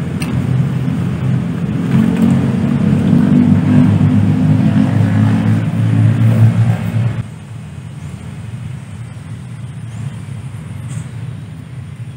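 A motor engine running close by, a loud steady low rumble that cuts off abruptly about seven seconds in, leaving a fainter rumble.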